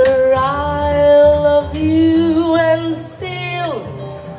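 Female jazz vocalist singing two long held notes, the second higher, then sliding down in pitch near the end, over double bass accompaniment.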